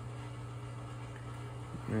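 A steady low hum with a few faint, even tones above it, unchanging throughout.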